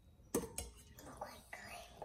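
A faint whispering voice, with a light click about a third of a second in.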